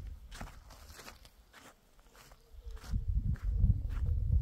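Footsteps on sand, about two steps a second. A low rumble builds in the second half and becomes the loudest sound.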